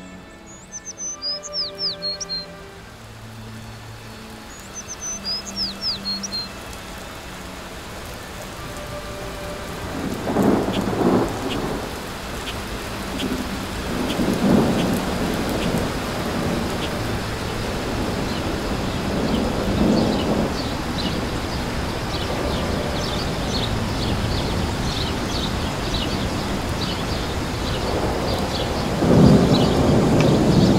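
Rain setting in and growing steadily heavier, with low rolls of thunder about ten, fourteen and twenty seconds in and a louder roll near the end.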